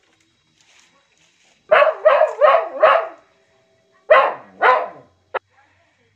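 Animal calls, loud and short: a run of four quick calls, a pause of about a second, then two more, followed by a single short sharp click.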